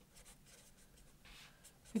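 Felt-tip marker writing on paper: faint, quick, scratchy strokes.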